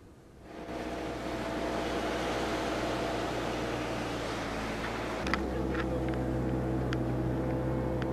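Steady hiss with a low mechanical hum. About five seconds in, it gives way to a louder, deeper engine drone heard from inside a car's cabin, with a few light knocks as the car drives over a sandy track.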